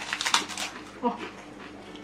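Crisp puffed rice cakes being bitten and crunched in a quick run of sharp crunches, followed about a second in by a short, high, whimpering vocal sound.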